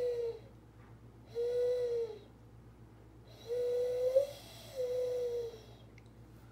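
A mourning dove's call, imitated by a person: four slow, low, hollow coos, each about a second long and gently arched in pitch, the third bending upward at its end.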